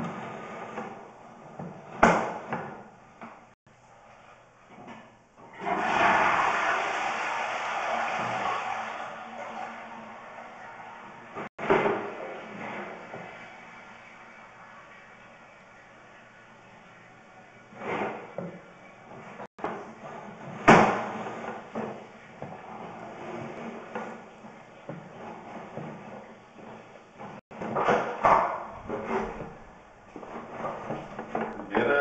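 Sewer inspection camera and its push cable being worked through a cast-iron drain line: sharp knocks and clatter every few seconds, loudest about two seconds in and again about twenty-one seconds in. A rushing noise starts about six seconds in and fades away over several seconds.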